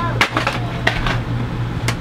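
A few sharp clicks or taps over a steady low hum in a small room.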